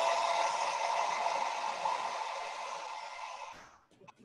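Handheld hair dryer blowing steadily over freshly painted fabric to dry the paint, growing gradually quieter and stopping just before the end.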